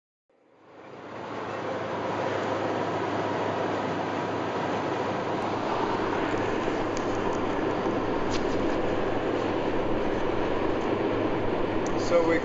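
Steady road and engine noise inside a car cabin at highway speed, fading in over the first two seconds.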